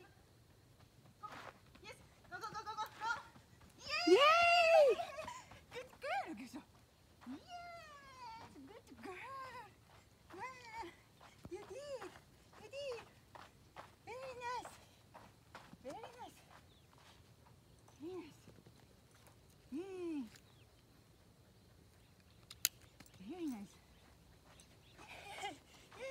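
A woman's short, high-pitched wordless calls and cues to a running dog, rising and falling in pitch and repeated about once a second, the loudest and longest about four seconds in.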